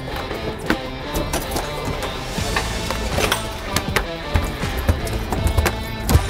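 A freshly landed bull dorado (mahi-mahi) flopping on a fibreglass boat deck, its body and tail slapping the deck in a run of irregular knocks, over background music.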